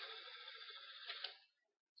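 Faint dry rustling of Bible pages being turned at a lectern, picked up by the microphone, stopping after about a second and a half.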